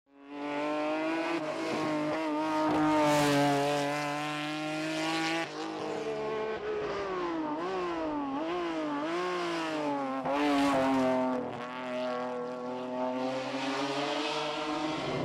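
BMW 3 Series hillclimb car's engine at high revs, holding a steady pitch, then dropping at a gear change about five and a half seconds in. It then swings up and down quickly through the bends, with brief lifts off the throttle near the end.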